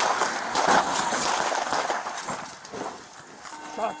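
A rapid volley of close-range handgun shots, many in quick succession and loud, over the noise of a car being driven hard, during the first two seconds. It then dies down.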